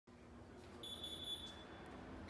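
Electronic door-entry alert giving a single steady, high-pitched beep of under a second as the glass front door opens.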